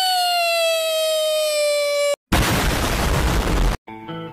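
A loud, long, high-pitched held cry or whistle slides slowly down in pitch and cuts off suddenly about two seconds in. After a brief gap comes a loud, rough explosion-like blast that stops abruptly about a second and a half later.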